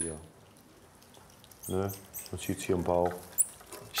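A low man's voice murmuring twice without clear words, and a single brief high rising squeak near the end from one of the small monkeys.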